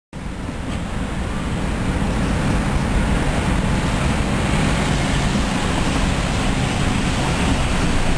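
Loud, steady outdoor rushing noise with a heavy low rumble, like wind on the microphone mixed with road noise. It swells over the first couple of seconds and cuts off abruptly at the end.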